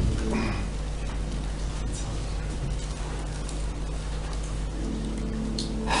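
A steady low hum under an even background hiss, with faint voices near the end.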